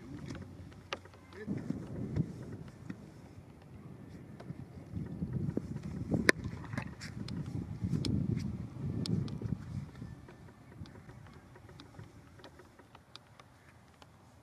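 Gusty wind buffeting the microphone: low, noisy swells that build and fade, strongest about two seconds in, around six seconds and again around eight to nine seconds, then easing near the end. Faint scattered clicks sit on top.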